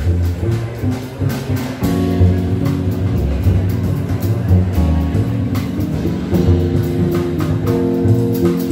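Jazz quartet playing live: Nord Electro keyboard, hollow-body electric guitar, double bass and drum kit. Held chords ring over the bass, with frequent cymbal strokes.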